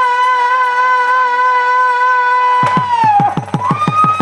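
Bangladeshi folk music: one long, steady held note. About three seconds in, a hand drum starts a quick beat of roughly five strokes a second as the held note drops away.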